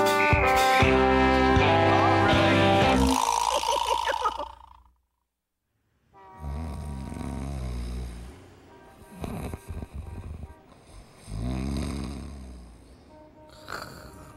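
Brassy instrumental theme music that ends about four seconds in, followed by a moment of silence; then a man snoring in slow, drawn-out breaths, about three of them.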